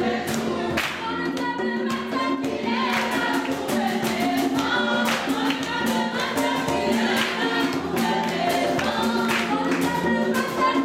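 A group of voices singing gospel praise music over a steady beat.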